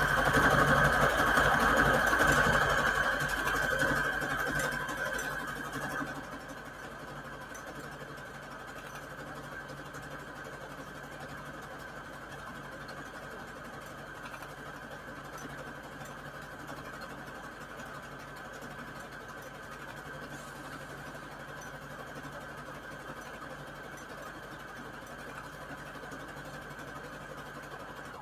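Electric sewing machine stitching a fabric strip onto a paper index card, running steadily. It is louder for the first five seconds or so, then continues at a quieter steady level.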